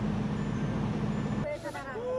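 Heavy engines of mobile cranes working a collapse site, running with a steady low drone. About one and a half seconds in, this gives way to a man crying and wailing in grief.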